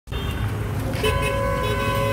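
Congested street traffic with engines running and vehicle horns honking. A short honk sounds near the start, and a longer held horn note begins about a second in.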